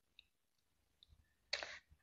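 Near silence in a pause in a woman's speech: a few faint mouth clicks, then a short breath about a second and a half in.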